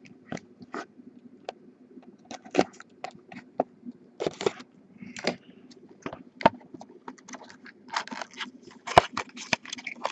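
Hands opening a sealed trading-card box and handling its foil packs: irregular crinkling, scraping and clicking of cardboard and foil, busier near the end.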